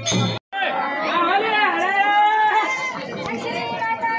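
Background music with a steady beat stops suddenly at the start. After a short silence, a group of women's voices fills the rest, several at once.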